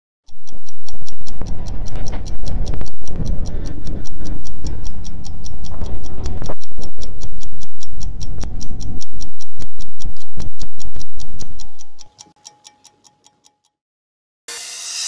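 Fast, even clock ticking, several ticks a second, over loud deep music. The music cuts out about twelve seconds in, and the ticking fades and stops just after.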